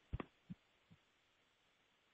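Near silence, a pause in a phone-in style conversation, with two or three faint, short, low thumps in the first half second.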